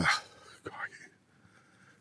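The end of a man's spoken word, a faint short murmur or breath just under a second in, then a pause close to silence: room tone.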